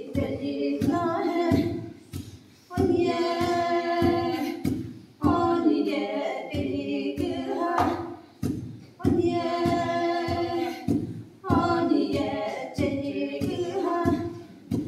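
Women's voices singing a Sumi Naga folk song without instruments, in phrases of two or three seconds. Repeated knocks of long wooden pestles striking a wooden mortar keep the beat under the singing.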